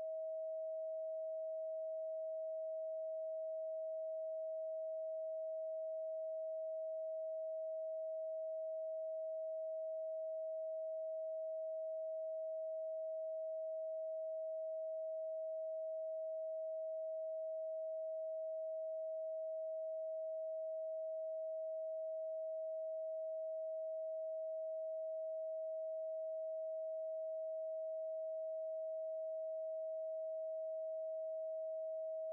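A steady 639 Hz pure sine tone, unchanging in pitch and level.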